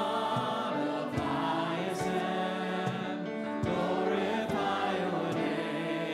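Church congregation and worship singers singing a hymn together in sustained, legato phrases.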